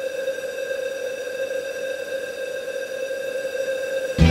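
A single held synth tone with evenly spaced overtones over a soft hiss, steady throughout: the sustained drone of a breakdown in an electronic dance remix.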